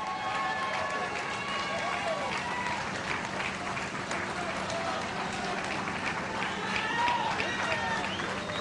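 A crowd of onlookers cheering and calling out, with many voices overlapping and some clapping.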